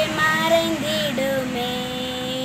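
A young girl singing a Tamil Christian song, ending on a long held note.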